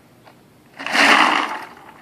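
Ice cubes rattling and sliding in a shallow plastic tray as it is tipped: one short burst of about a second, starting about a second in.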